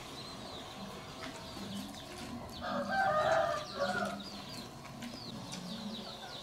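Chickens calling: a louder chicken call of about a second, starting about two and a half seconds in, with a shorter call just after, over repeated short, high peeping chirps.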